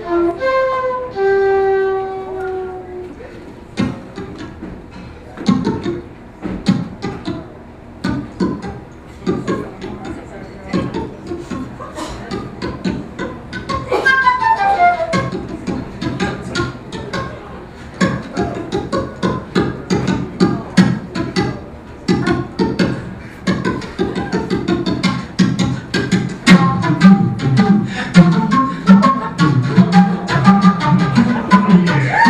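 Live big-band jazz led by a flute. The flute opens with a phrase of clear held notes, followed by a stretch of quick percussive clicks and short, choppy notes. About halfway through comes a rapid falling flute run, and the band then fills in louder, with heavy low accents near the end.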